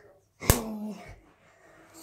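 A single sharp knock about half a second in, followed right away by a boy's short voiced sound.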